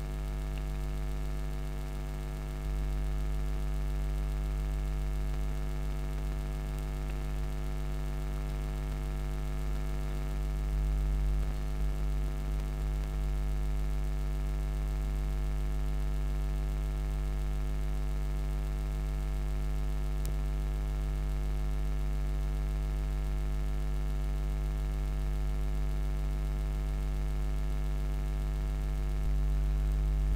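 Steady electrical mains hum: one low tone with a stack of evenly spaced overtones, unchanging throughout, stepping up slightly in level about three seconds in.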